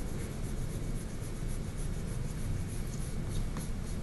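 A white eraser rubbed briskly on drawing paper to lift pastel chalk, in quick, even back-and-forth strokes, about five a second.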